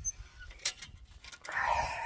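Hens giving a drawn-out call that starts about three-quarters of the way in, over low rumble from a handheld phone and a single click.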